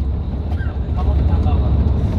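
Steady low rumble of engine and road noise heard inside a moving vehicle's cabin.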